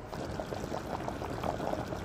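Meat broth boiling hard in a pot on the stove: a steady, rapid bubbling made of many small pops.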